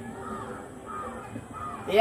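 A bird calling four times, short arched calls about half a second apart.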